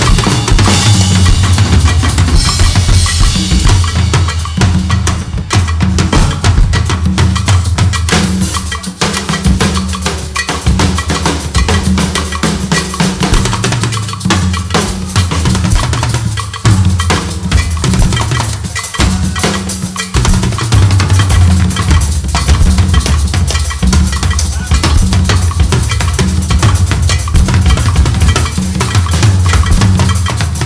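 Live afrobeat drumming on drum kits with hand percussion: a busy, loud groove of kick drum and snare, broken by a few short gaps around the middle.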